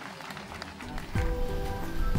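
Audience applauding, a faint patter of many hands clapping; about a second in, background music with steady held notes and a deep bass comes in over it and grows louder.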